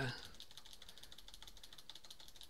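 Faint, rapid clicking of computer keyboard keys being typed on.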